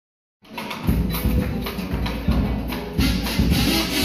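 Chirigota carnival band starting a cuplé: a drum beats a steady run of thumps, with guitars. The sound comes in about half a second in and fills out at about three seconds.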